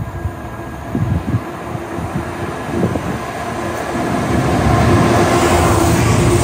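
Diesel freight locomotive approaching at speed with its train, the engine and wheel rumble growing steadily louder until it draws level near the end.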